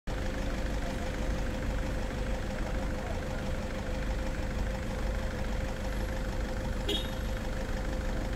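Vehicle engine idling steadily: a low rumble with a constant hum, and one brief sharp sound near the end.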